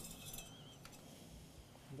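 Near silence: faint room tone with a couple of light metallic clicks as the automatic transmission dipstick is pulled out for a check of the fluid.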